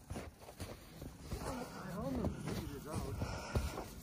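Quiet speech through the middle, with a few soft knocks near the start and again near the end.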